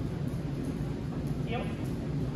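Steady low rumble of room noise in a large hall, with faint light ticks from movement on the concrete floor, and a man saying "heel" about a second and a half in.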